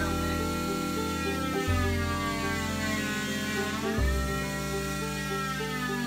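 Background music with sustained chords changing every couple of seconds, over the wavering whine of an oscillating cast saw cutting through a fibreglass leg cast.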